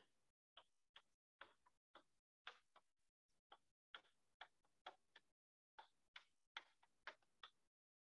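Near silence with faint, irregular taps and ticks of chalk on a blackboard as equations are written out.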